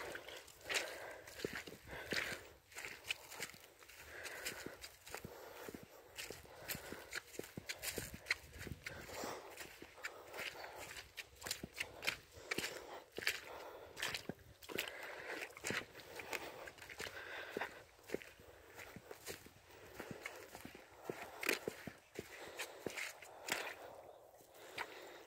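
Footsteps at a steady walking pace on a wet, muddy dirt track strewn with dead leaves.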